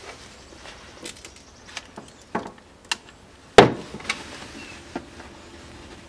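Hand tools worked on a workbench as a wire end is stripped and a ring terminal crimped on: scattered small clicks and knocks, the loudest a sharp knock about three and a half seconds in.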